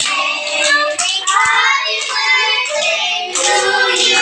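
A group of children singing a song together, clapping their hands along with it.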